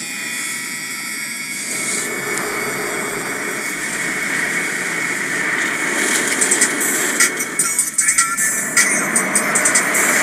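D&S IQ soft-touch automatic car wash heard from inside the car: water spray and wash equipment working over the body and windows as a steady rush, turning into a rapid patter about six seconds in.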